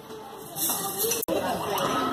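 Young children's voices chattering, with no single clear speaker. The sound drops out for an instant about a second in.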